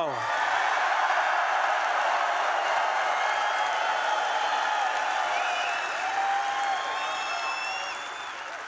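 Large indoor crowd cheering and clapping steadily, with a few individual shouts and whoops rising over it in the second half.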